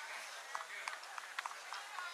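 Distant voices of players and spectators calling out, with a few short, sharp clicks scattered through.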